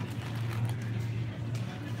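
Supermarket background: a steady low hum with faint, even store noise and no distinct events.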